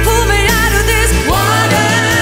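Sixties-styled pop-rock song with a woman singing over bass and guitars; about a second and a half in, a note slides up and is held.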